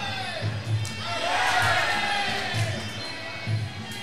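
Fight crowd cheering and shouting over music with a low, steady drum beat. The cheering swells about a second in and eases off after the third second.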